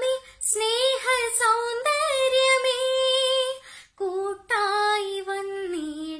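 A girl singing solo: one voice holding long notes with a slight waver, pausing briefly for breath about half a second in and again around four seconds in.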